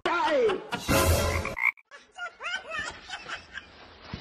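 A person's wordless vocal sounds: a falling cry at the start, then short pitch-bending croaks and grunts after a loud rushing burst about a second in.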